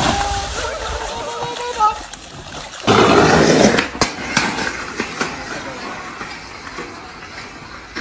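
A voice cries out as a wooden dock gives way under a person, then a loud splash about three seconds in. Quieter rolling noise with scattered sharp clacks follows, from a skateboard on pavement.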